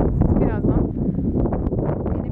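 Strong wind buffeting the microphone, a loud steady low rumble, with a brief voice-like sound about half a second in.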